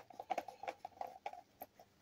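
Plastic screw cap being twisted onto the plastic neck of a field canteen: a quick run of faint clicks and ticks that thins out and stops about a second and a half in.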